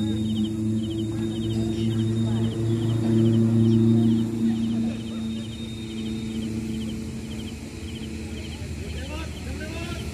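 A football struck hard once at the very start, then steady low hum and players' voices across the pitch, with a faint high chirping repeating about three times a second.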